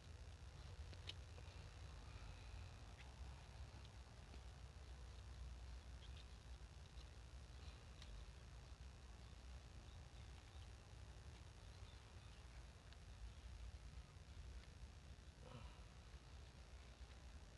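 Near silence: a faint low rumble with a few soft, scattered clicks of small hand scissors snipping kailan stems.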